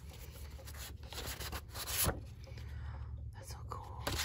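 Glossy paper pages of an album photobook being handled and turned, rustling irregularly, with a sharper page flip about two seconds in.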